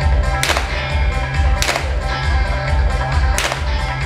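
Three revolver shots from a stage gunfight, the first about half a second in and the others over the next three seconds, over background music with a steady beat.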